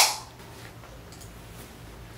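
A sharp click right at the start that dies away within a fraction of a second, then quiet room tone with a faint low hum.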